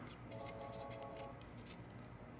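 Faint background music, a held chord, with a few light clicks from the plastic speaker adapter being handled.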